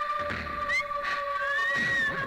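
Film background music: a held synthesizer note under rising, gliding synth sounds, with a low drum beat.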